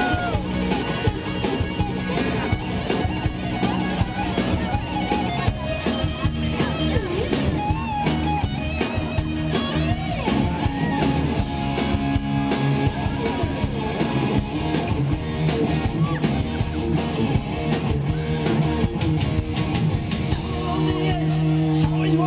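Live rock band playing, with a lead electric guitar playing bent, gliding notes over drums and bass.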